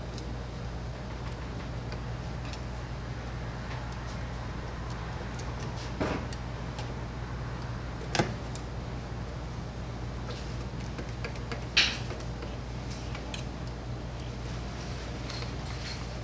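A few sharp small metal clicks from a pick working on a carburetor and its linkage, the loudest about twelve seconds in, over a steady low hum.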